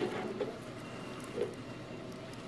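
Faint scratching with a few light ticks from a metal pick picking excess support material off a small 3D-printed PLA part.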